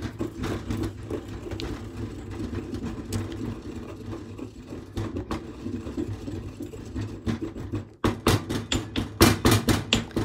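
Stone pestle grinding dried herbs in a marble mortar: a steady gritty scraping dotted with small clicks. From about eight seconds in the strokes turn faster and louder, stone knocking and rubbing on stone. The herbs are not yet fully crushed.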